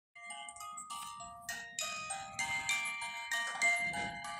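Pirate-ship mouse music box playing a tinkling tune, a new note about three times a second.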